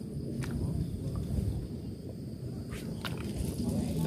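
Low, uneven rumble on the microphone with a few faint clicks, the kind of noise a phone picks up when it is held against clothing outdoors.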